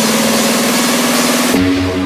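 Techno track build-up: a repeated synth note rolls faster and faster under a bright rising noise sweep. About one and a half seconds in it breaks into the drop, where the hiss cuts out and steady bass and synth tones take over.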